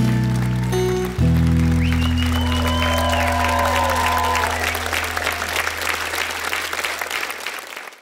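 The last chord of a live acoustic-guitar song ringing out and slowly fading. Studio-audience applause and cheering swell over it from about two seconds in.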